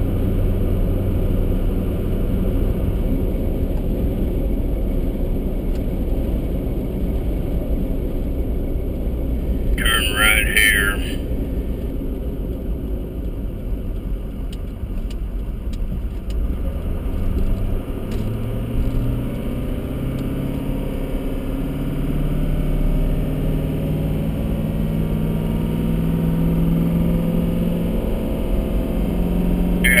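Car engine and tyre-road noise heard from inside the cabin while driving: a steady low engine note early on, easing off in the middle as the car slows for a turn, then climbing steadily from about 18 seconds in as the car picks up speed again.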